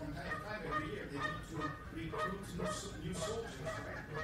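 A person's voice from the audience, off the microphone, asking the lecturer a question in short, quick syllables.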